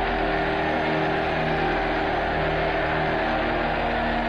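Orchestral film music with a massed crowd cheering underneath in a steady roar, on an old 1940 film soundtrack.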